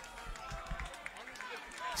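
A lull with the music stopped: only faint background voices and low thuds are heard, until the MC's voice and the drum and bass track come back in at the very end.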